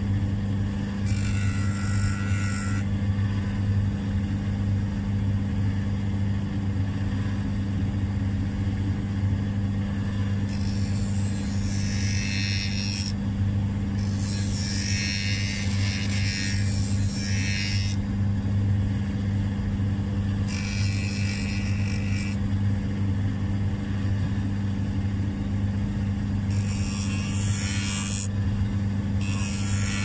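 Small cobbler's belt sander running with a steady electric-motor hum. About six times a gritty hiss of one to four seconds rises over it as a stiletto heel tip is pressed to the belt and sanded flush with the heel.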